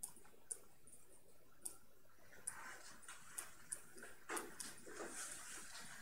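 Faint, irregular clicks and taps from a drawing-tablet stylus, about a dozen over several seconds, with a soft rustling noise building in the second half.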